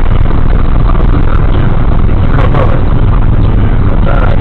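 Steady, loud road and engine noise inside a car cruising on a motorway at about 87 mph, picked up by the dashcam's microphone, heaviest in the low rumble.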